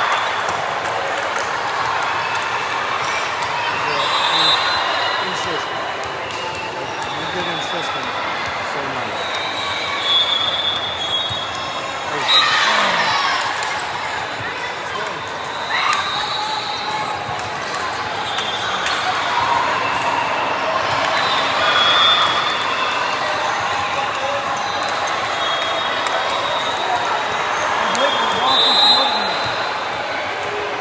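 Echoing gym din of a volleyball match: many overlapping voices of players and spectators, with repeated short high squeaks and a few sharp ball impacts on the hardwood court.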